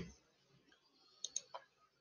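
Three faint, quick computer-mouse clicks a little over a second in, against near silence.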